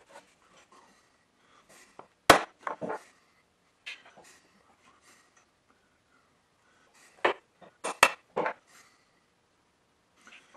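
Small metal hand tools clicking and clinking against a steel block and the metal plate under it while hole centres are being punched: a sharp click about two seconds in with two lighter ones after it, then a second group of four or so sharp clicks about seven to eight and a half seconds in.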